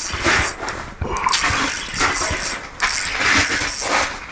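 Ice-fishing spinning reel being cranked fast in three bursts with short pauses, its gears whirring as a hooked big walleye is reeled up through the ice hole.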